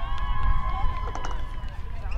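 A long drawn-out shout from players on the field, held on one slightly wavering note for about a second and a half before it fades. A low rumble of wind on the microphone runs underneath.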